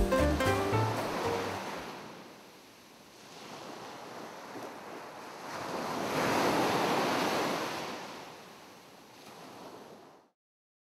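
Music fading out in the first second or two, then ocean surf: a wave washing in, swelling to its loudest about six to eight seconds in, then receding.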